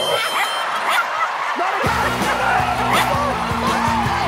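A small terrier barking and yipping in short repeated calls over audience laughter. A bass-heavy music track comes in about two seconds in.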